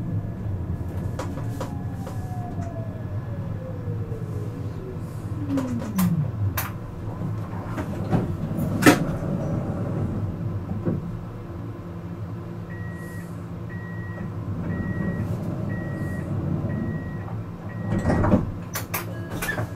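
Siemens Avenio tram braking to a stop, its traction-motor whine falling steadily in pitch over the first six seconds under a steady low hum, with a few clicks and a sharp clunk around nine seconds. Standing still, it keeps humming while a short high beep repeats about once a second from about thirteen seconds in.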